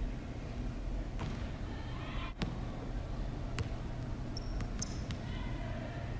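Basketball bouncing on a hardwood gym floor: a few sharp bounces about a second apart, the one about halfway through the loudest. A brief high squeak comes near the end.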